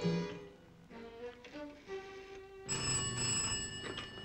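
Sparse underscore music, then well past halfway a telephone bell rings once for about a second and stops abruptly, as if the call is answered.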